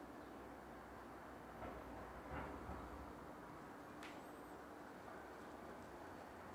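Near silence: quiet room tone, with a couple of faint soft noises about two seconds in and a small click about four seconds in.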